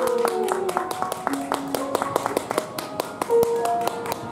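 A small audience clapping after a song ends, the separate claps irregular and distinct, with music tones held underneath.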